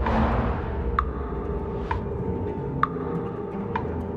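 Tense film-trailer score: a low, steady drone under held tones, opening with a swelling hit. A sharp, clock-like tick lands about once a second.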